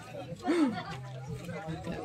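Voices of other people talking in the background, with one short spoken sound about half a second in, over a steady low hum.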